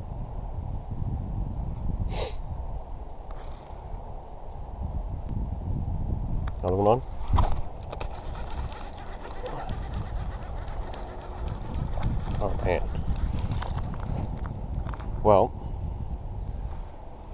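Wind rumbling on the microphone, with a few brief wavering pitched sounds.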